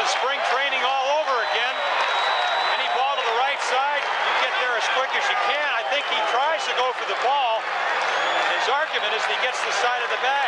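Baseball stadium crowd din from an old TV broadcast: many voices shouting over one another in a dense, steady roar.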